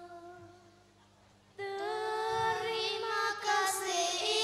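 A group of girls singing a nasyid (Islamic devotional song) in unison into microphones. A held note fades out, and after a short near-quiet pause a new phrase starts about one and a half seconds in, much louder.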